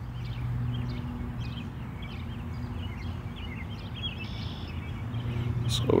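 Small birds chirping in quick, scattered bursts over a low steady hum and outdoor rumble.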